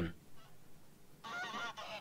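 Geese honking hoarsely, several calls overlapping, starting about a second in and fairly quiet.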